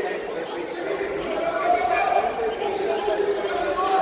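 Background chatter of many voices talking and calling out at once in a large indoor hall.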